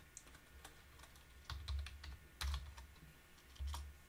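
Computer keyboard typing: irregular keystrokes while a line of code is entered, with a few low thuds among them.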